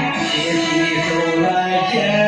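A man singing a Chinese song into a microphone over instrumental backing music with guitar, holding steady sung notes.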